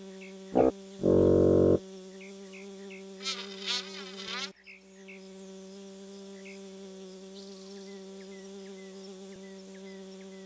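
Cartoon bee buzzing: a steady, pitched insect drone, with a loud burst of sound lasting under a second about a second in. Around three to four seconds in, a brief wavering sound rises over the buzz.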